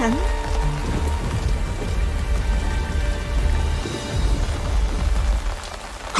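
Steady rain falling on wet ground, with a low, sustained music drone underneath.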